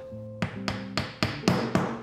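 Wooden mallet tapping a mitered joint about six times in quick succession, knocking the pieces together onto domino tenons.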